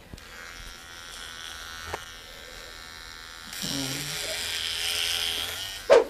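Small electric hair clipper running with a steady buzz, getting clearly louder about three and a half seconds in as it is brought against the sleeping person's head.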